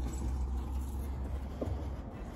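Low, steady rumble of wind on the phone's microphone outdoors, with a faint short blip about one and a half seconds in.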